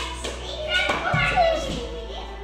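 Young children's voices calling out as they play together, with a single thump about a second in.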